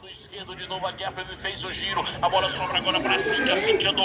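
Speech: voices talking and calling out at a football match, with no other clear sound.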